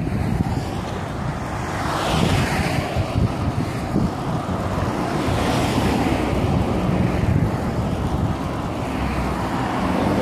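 Road traffic passing close by on a fast road, heard with wind rushing over the microphone of a moving bike-mounted camera; passing vehicles rise and fade about two seconds in and again around the middle.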